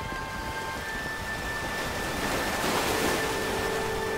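Background music of held, sustained tones over a rushing noise that swells to a peak about three seconds in and then eases, with a new lower held tone entering as it peaks.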